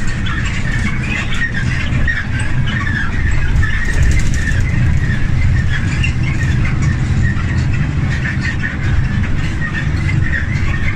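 Cabin sound of a moving air-conditioned city bus: a steady low engine and road rumble, with irregular high squeaks on top.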